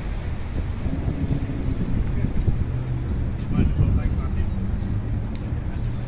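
A 2020 Yamaha YZF-R3's 321 cc parallel-twin engine idling steadily.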